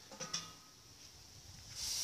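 A few small clicks, then near the end a steady high sizzling hiss comes up suddenly as the lid of a stainless steel fish smoker is opened on fish hot-smoking inside.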